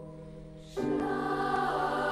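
Girls' choir singing in a church: a held chord fades, then about three-quarters of a second in the choir comes in on a new, louder chord over a steady low accompanying tone.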